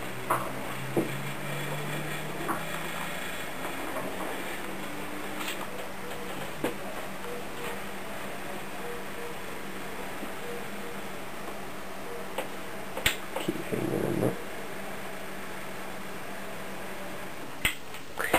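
Steady whir of a custom-built desktop PC's case fans and power supply running. Occasional light clicks and knocks from hands working inside the case, with a short rustling bump about thirteen seconds in.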